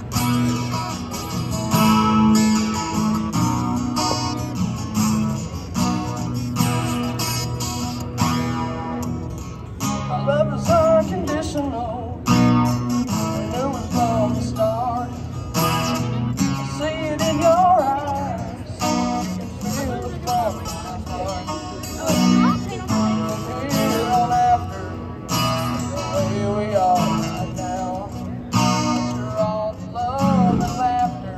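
Acoustic guitar strummed live on a country song, with a solo voice singing over it from about ten seconds in.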